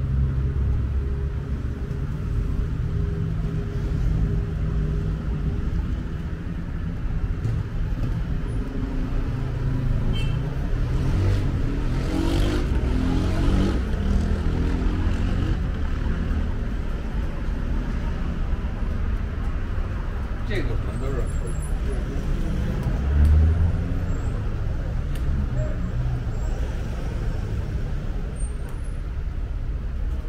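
Steady low rumble of road traffic passing along a town street, with a brief louder swell from a nearby vehicle about two-thirds of the way through.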